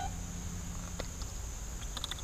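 Outdoor ambience with a steady high chirring of insects, and one faint click about a second in.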